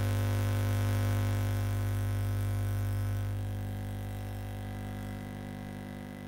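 A steady low electronic hum with many overtones, holding one unchanging pitch and fading gradually through the second half.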